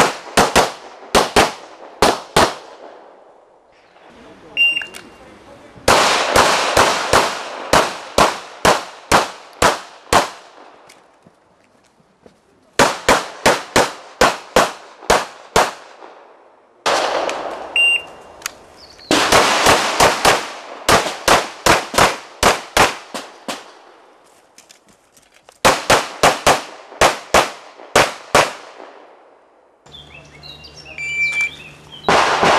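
Glock pistols firing rapid strings of shots in practical shooting, several runs of quick shots a fraction of a second apart with pauses between them. A short, high electronic shot-timer beep sounds twice, each time just before a run of shots.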